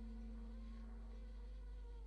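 Baritone saxophone holding a very soft, steady note.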